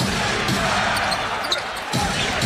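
Basketball arena game sound: a steady crowd murmur with a basketball being dribbled on the hardwood court, and a couple of short sharp knocks near the end.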